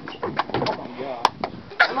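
Indistinct girls' voices in the background, with a few sharp clicks of the handheld camera being handled.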